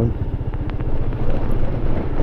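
Honda SH150i scooter's small single-cylinder four-stroke engine running steadily at low speed, heard as a low rumble from on board.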